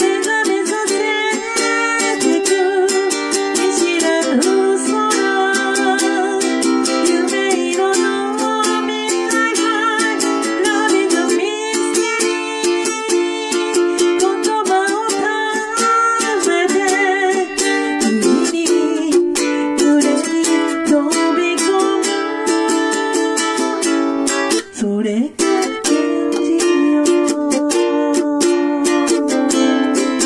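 Ukulele strummed in chords in D minor, accompanying a singing voice, with a brief break in the playing about 25 seconds in.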